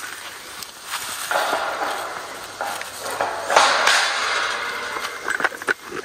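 Footsteps crunching and shuffling through dry leaf litter and dirt, an uneven rustle that is loudest between about one and four seconds in.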